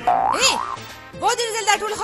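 Music with a voice whose pitch swoops sharply up and down, in two loud bursts: one just after the start, another in the second half.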